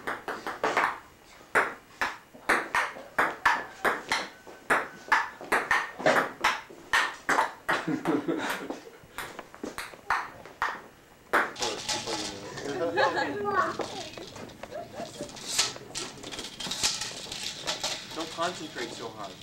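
Table-tennis rally: the ball clicks sharply against paddles and table, about two to three hits a second. Near the two-thirds mark the clicks stop and people talking take over.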